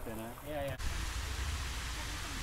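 A voice trailing off, then after a sudden cut a steady outdoor hiss with a low rumble underneath.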